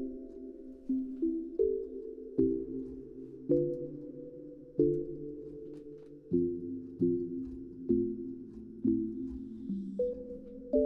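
Sine-wave pluck pad synth patch made in Serum, played as a run of chords: about eleven chords, each starting with a sharp pluck and ringing on as it fades, the notes sitting low in pitch.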